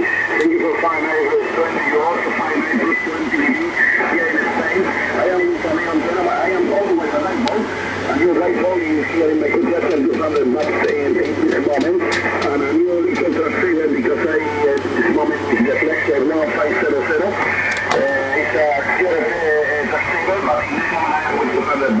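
Single-sideband voice from the other station on the 40-metre band, received on a Yaesu FTDX5000 transceiver: continuous thin, narrow-band speech over band noise.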